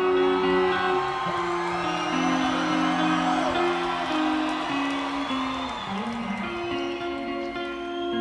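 Slow guitar intro of a song played live, held notes changing every second or so, with the crowd cheering and whistling over it in the middle.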